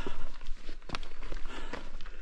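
A hiker's footsteps on a dirt and rock forest trail, a few distinct steps about a second apart.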